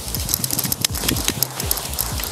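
Paraglider wing fabric rustling and snapping in quick, irregular crisp clicks as it fills with air and rises off the grass. Background music with a steady beat plays under it.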